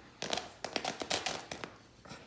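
Great Danes playing tug with a shredded fleece blanket: a quick, irregular run of sharp taps and flaps, about a dozen in a second and a half, as the black dog shakes the blanket in its mouth. The taps stop near the end.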